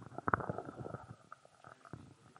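Microphone handling noise: irregular soft bumps and clicks, with a louder cluster in the first half second.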